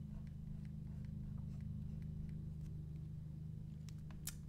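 Steady low electrical hum, with faint, scattered light taps and scratches of a stylus on a Wacom Intuos Pro pen tablet as short strokes are drawn.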